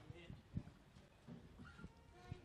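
Near silence: room tone with a few soft knocks and faint voices in the background.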